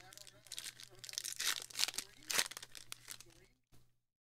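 Trading card pack wrapper being torn open and crinkled by hand: a run of uneven crackles, loudest in the middle.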